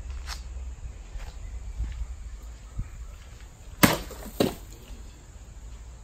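A machete blade striking and slicing through a plastic soda bottle on a cutting stand: one sharp crack just under four seconds in, followed about half a second later by a second, weaker knock.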